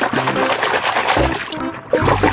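Water splashing and churning as a hand scrubs plastic toy animals in it, over background music.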